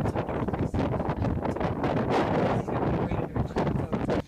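Raging wind buffeting the microphone: a loud, gusty rush with irregular blasts.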